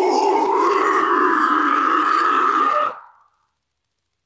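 Isolated deathcore vocal: one long, harsh screamed note held steadily, cutting off about three seconds in.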